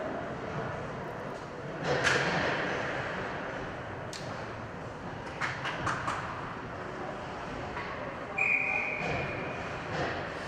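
Indoor ice rink ambience during a stoppage: a steady hall hum with scattered knocks and clacks of sticks and pucks. The loudest knock, echoing in the hall, comes about two seconds in. A brief steady high tone comes near the end.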